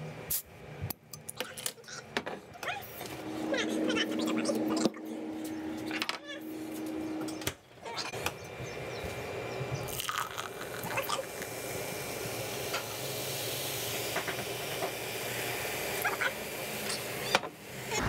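Clicks and knocks of a cider bottle and glass being handled, then a steady hiss of cider being poured and fizzing for several seconds.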